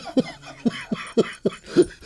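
A man laughing helplessly in a run of short breathy bursts, a couple a second.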